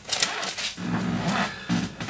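A man's low murmuring voice, in two short stretches, after a brief burst of noise at the start.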